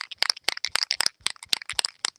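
Aerosol can of repositionable stencil adhesive (tacky spray) shaken hard, its mixing ball rattling in a fast, even run of sharp clacks, about eight or nine a second, to mix the adhesive before spraying.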